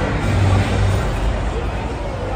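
Deep rumbling sound effect from a video-wall show's soundtrack over a restaurant sound system, swelling in the first second and a half, over the steady din of diners talking.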